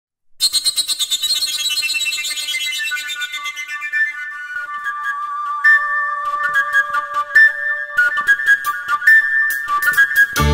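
Slovak folk-music intro: a rapid cimbalom tremolo rings out and fades over the first few seconds. A koncovka, the overtone flute without finger holes, then plays a high melody.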